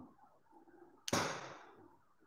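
A single sharp clack or knock about a second in, fading out over about half a second, against faint room tone.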